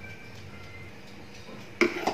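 Faint background music over steady room tone, then near the end a short knock as a metal kitchen knife is set down on a wooden cutting board.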